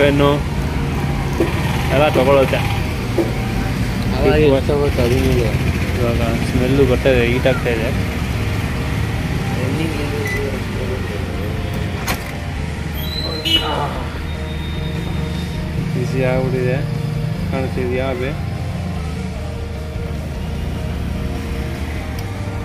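A man talking over the steady low hum of a microwave oven running with its cover off, its transformer and new magnetron under power.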